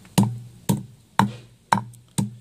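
Claw hammer pounding castor bean seeds wrapped in cloth on a board, crushing them to press out some of their oil. Four blows about half a second apart, each a sharp knock with a brief ring.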